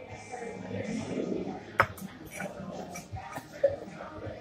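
Restaurant background: music and a murmur of voices, with two sharp clicks, one a little under two seconds in and one near the end.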